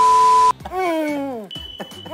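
An electronic test-pattern beep with static hiss lasts half a second and cuts off abruptly. It is followed by a voice moaning in long falling tones.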